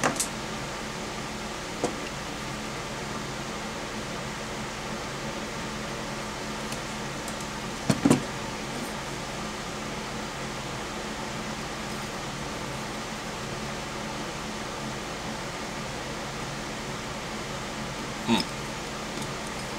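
Steady hum of a fan or air conditioner, with a few light clicks near the start and a louder double knock about eight seconds in: small metal tools, a dial caliper and a wire gauge, handled on a workbench mat.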